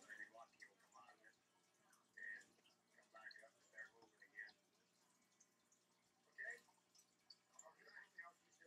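Near silence, with a few faint, short ticks and scrapes from a cuticle pusher working along the fingernails.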